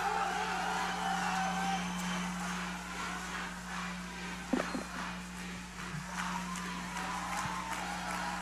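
A quiet lull in a live outdoor concert: faint crowd and venue ambience over a steady low hum from the sound system, with a brief faint shout about halfway through.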